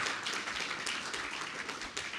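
Audience applauding, a steady patter of many hands clapping.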